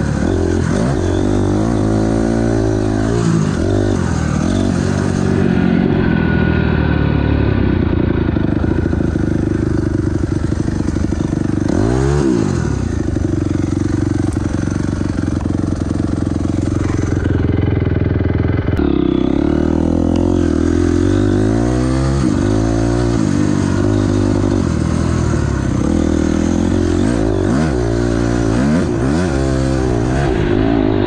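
Onboard sound of a Honda dirt bike's engine under way, its pitch climbing and falling again and again as the throttle is opened and closed, with one brief drop and pick-up partway through.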